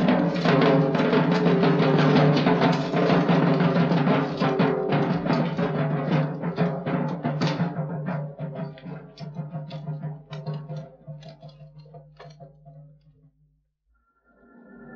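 Field drums beating fast over a held low note, the strokes thinning and fading away over the second half until it dies out just before the end.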